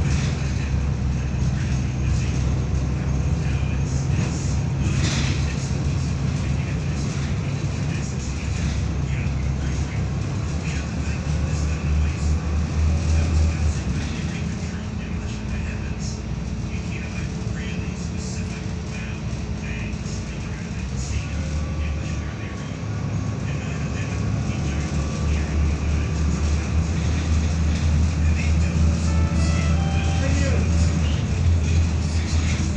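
Cabin sound of a Volvo B7RLE city bus under way: the rear-mounted six-cylinder diesel's low drone with body and fittings rattling. It eases off for several seconds around the middle, then builds again as the bus pulls on.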